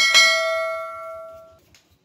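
A single bell-like metallic ring, struck once and dying away over about a second and a half.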